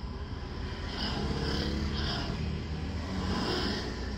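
Steady low rumble inside a car cabin, with a soft, indistinct voice from about a second in until near the end.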